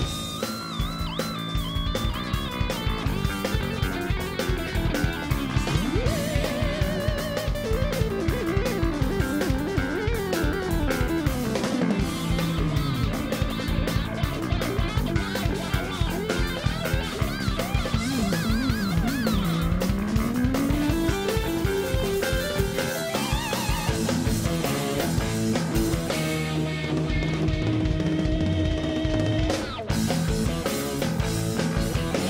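Live progressive rock band playing an instrumental passage. An electric guitar leads with quick winding runs over a steady drum kit beat and keyboards.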